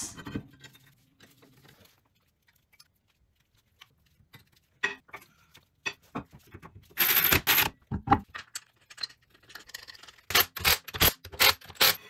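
Metal clinks and knocks as a rear brake rotor and caliper are refitted by hand, with a louder rasping burst about seven seconds in and a quick string of sharp clattering bursts near the end.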